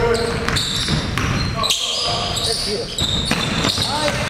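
A basketball bouncing on a hardwood gym floor, with irregular knocks, and short high squeaks of sneakers against the floor, in a reverberant gym among indistinct voices.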